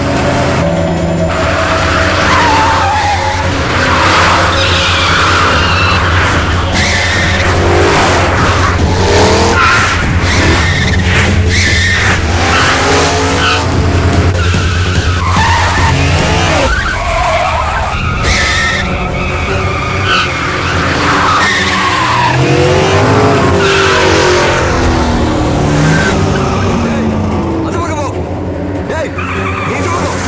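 Car chase sound effects: car engines revving up and down in pitch and tyres skidding and squealing, mixed with background music.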